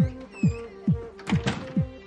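Electronic dance music with a heavy kick drum on every beat, a little over two beats a second, over a held synth line that steps between notes.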